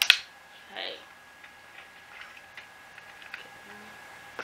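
Small plastic clicks and taps from a tripod head as its pan handle is fitted in by hand: a sharp click just at the start, then a scatter of light ticks.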